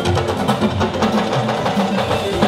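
Loud live band music through a PA system, a dense mix with a fast, steady beat.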